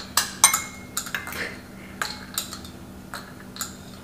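Flat stainless steel chopsticks clicking and tapping against ceramic bowls while picking up small dried beans: an irregular string of sharp clinks, some with a brief ring. The loudest comes about half a second in.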